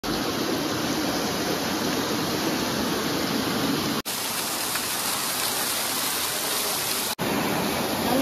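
Small waterfall pouring over rocks into a stream pool: a steady rushing of water, cutting out for an instant twice, about four and about seven seconds in.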